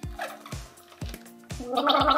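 A woman gargling a mouthful of water with her head tilted back as a mock turkey mating call; the gargle starts loud near the end. Under it, background music with a steady beat.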